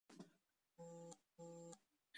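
Two faint, identical short electronic beeps, about half a second apart.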